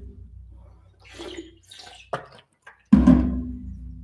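A few soft swallowing and water-bottle sounds as someone takes a quick drink of water, then, about three seconds in, music starts suddenly with a loud low sustained chord that fades away.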